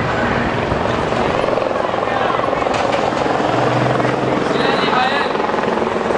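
Helicopter flying overhead, its rotor chop running steadily, with crowd voices underneath.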